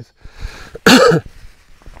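A man coughs once, loudly, about a second in.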